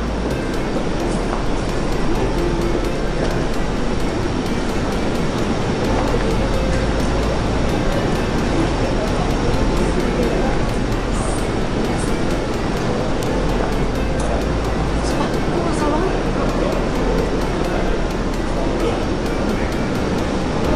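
A steady, loud din of overlapping voices mixed with music.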